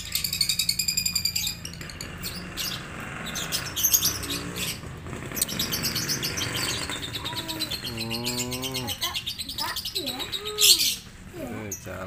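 Caged lovebirds chirping and chattering, opening with a fast run of repeated high chirps for about a second and a half, then scattered chirps.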